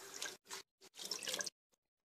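Faint water dripping and splashing in three short bursts, the longest about a second in.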